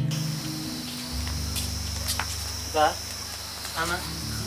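Steady, high-pitched chorus of crickets, heard over low, held background-music notes that change about a second in.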